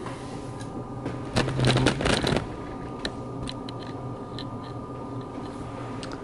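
A short burst of rustling, crackling handling noise about a second and a half in, followed by a few scattered light clicks, over a steady low hum.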